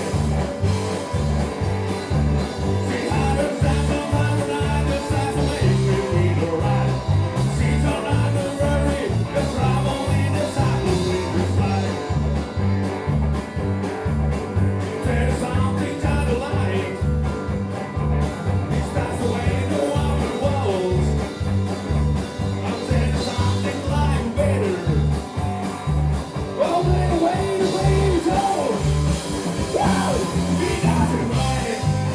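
Live rock band playing: drums, bass guitar and electric guitars over a steady, driving beat.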